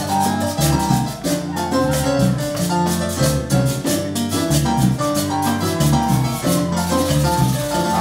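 Live Latin band playing an instrumental vamp: bass and melody notes over a steady rhythm of small hand percussion that drops out about a second before the end.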